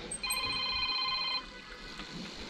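A bell-like ringing tone of several steady pitches sounding together, held for about a second and then stopping.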